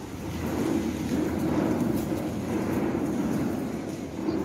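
An audience getting to its feet: a steady shuffle of many people standing up together.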